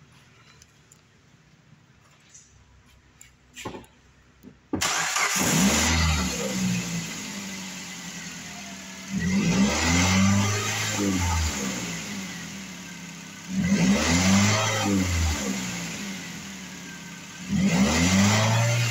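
A 2007 Suzuki SX4's 2.0-litre four-cylinder engine catches suddenly about five seconds in, then is revved up and let fall back to idle three times, roughly every four seconds.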